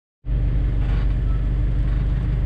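Car engine running as the car rolls slowly: a steady low drone that starts about a quarter second in.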